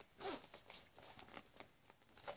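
Faint handling noise: soft scattered clicks and rustles of a zippered hard carrying case being turned in the hands.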